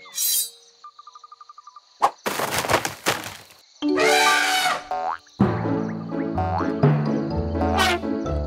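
Cartoon sound effects: a short swish, a quick run of light ticks, a click and a couple of noisy bursts with a comic pitched effect. Then children's cartoon music with a steady beat comes in about five seconds in.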